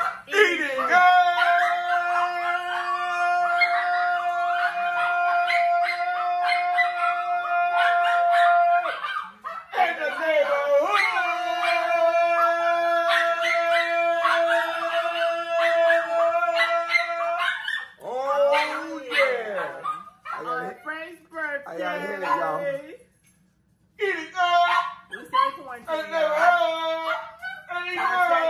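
Voices holding one long, steady sung note for about eight seconds, then another for about six, followed by shorter calls that slide down in pitch and a brief pause near the end.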